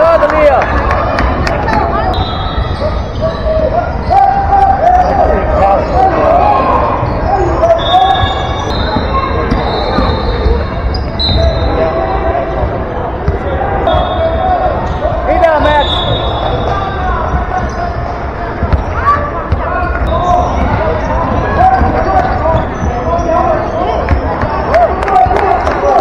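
A basketball bouncing on a hardwood gym floor during play, with short high sneaker squeaks and the overlapping chatter and shouts of players and spectators carrying through a large gym.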